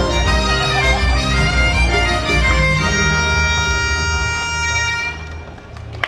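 Breton dance music for a laride in eight beats: a sustained melody over a steady low beat, which fades and stops near the end.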